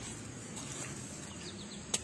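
Outdoor background with a few faint, short high chirps of small birds, and a single sharp click near the end.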